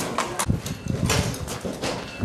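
Hooves of a harness trotter striking concrete as it walks pulling a sulky, a few sharp, irregular clops.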